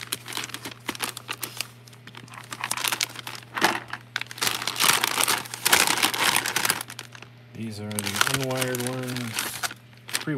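Plastic zip bags and anti-static bags of small electronic parts crinkling and rustling as hands sort through them, in irregular bursts of crackle.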